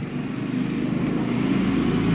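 An engine running steadily, growing a little louder in the second half.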